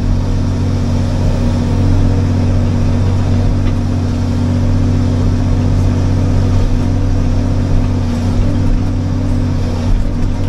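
John Deere excavator's diesel engine running steadily, heard from inside the cab while the boom and bucket work, with an even low drone.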